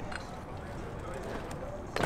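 A BMX bike rolling across concrete: a low, steady rumble of tyres, with faint voices in the background.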